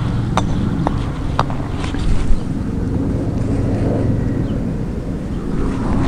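Wind rumbling on the microphone outdoors, a steady low hum beneath it, with three light clicks in the first second and a half.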